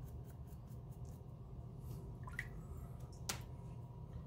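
Faint scraping and small clicks of a wooden digging pick working a water-softened fossil dig brick, with one sharper tap a little over three seconds in.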